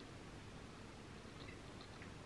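Near silence: faint room tone, with a few soft ticks of a metal fork against a ceramic plate as a forkful of pasta bake is lifted, about one and a half seconds in.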